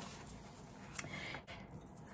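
Faint handling of cardstock on a tabletop, with one light click about a second in.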